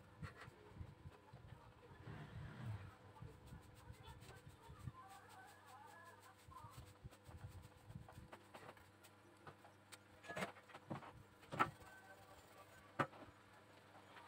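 Quiet room tone at a repair bench, with three short sharp knocks near the end, from tools being handled and set down.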